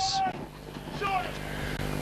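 Faint distant shouting voices from players on the field, two short calls about a second apart, over a steady low hum of outdoor background noise.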